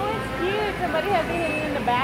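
A nearby voice talking over the steady background hum of a large store.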